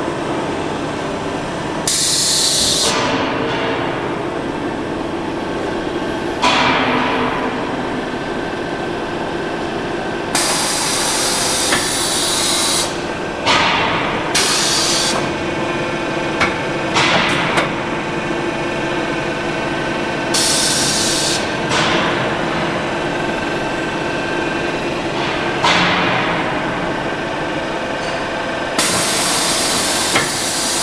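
Rotary terrazzo tile press machine running: a steady machine hum, broken every few seconds by loud hissing bursts lasting a second or two, and by shorter sweeping noises that fall in pitch.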